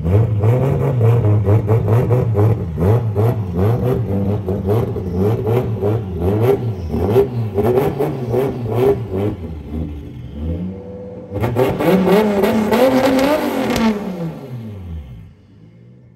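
Nissan 240SX drift car engine running at low speed with repeated short throttle blips as it creeps up the ramps into the trailer. About eleven seconds in it revs up once, then the revs fall away and the sound fades out near the end.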